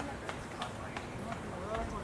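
Indistinct chatter of onlooking visitors' voices, with scattered light clicks and taps.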